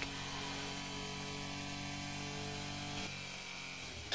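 Steady electrical hum and buzz on the team-radio audio between messages; its lowest tones drop out about three seconds in.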